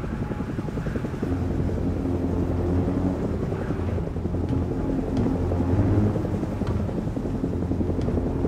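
Helicopter rotor and engine noise heard from inside the cabin, a steady fast chop with a low hum, with music playing low underneath.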